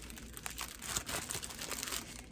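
Crinkling and rustling of packaging as a pack of paper treat sacks is pulled out and handled, in irregular crackles that grow louder around the middle and again near the end.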